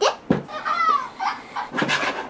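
Battery-operated plush toy puppy giving a few short electronic barks and yelps, set off by the voice near it.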